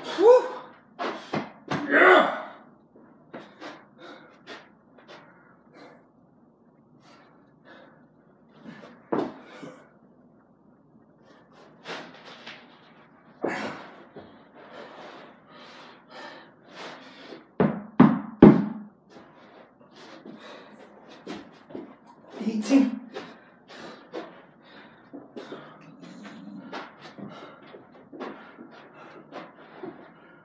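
A person doing burpees on a carpeted floor: repeated dull thuds as hands and feet land, spaced several seconds apart, with heavy breathing and grunts.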